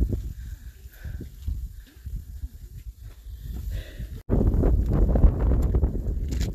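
Wind rumbling on the microphone while walking, with footsteps on a trail; after a cut about four seconds in, the wind rumble gets louder and steadier.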